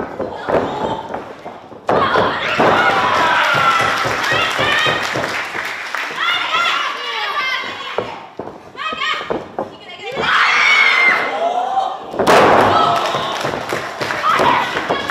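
Professional wrestling in the ring: women wrestlers shouting and yelling over repeated thuds of bodies hitting the ring mat, with a sudden loud burst about two seconds in and again near the end.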